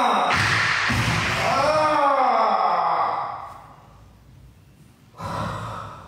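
A person's drawn-out, wordless vocal sound lasting about three and a half seconds, its pitch rising and falling in slow arcs with a breathy edge, like a long moan or sigh. A shorter breathy exhale follows about five seconds in.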